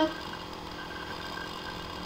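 Low, steady background hum and hiss of the recording, with no events.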